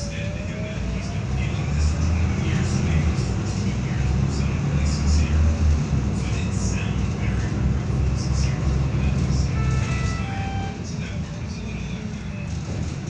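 Inside a Volvo B7RLE bus under way: the rear-mounted six-cylinder diesel engine drones, growing louder about two seconds in as the bus picks up speed and easing off again near the end. A few short high beeps sound about ten seconds in.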